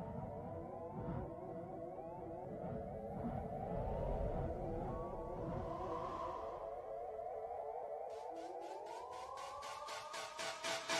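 Synthesized logo sound effect: many overlapping short rising tones repeating steadily over a low rumble. A brighter swell comes about six seconds in, and a fast, even pulsing joins near the end.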